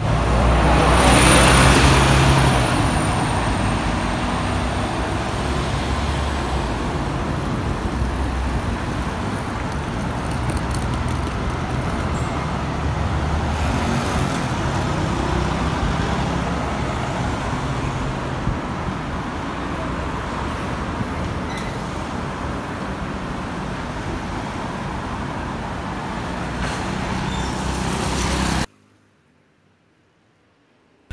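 Road traffic on a city street, with an SBS Transit bus running right alongside at first: its engine is loudest in the first few seconds, with a high whine that falls away. Steady traffic noise follows, then the sound cuts off abruptly near the end.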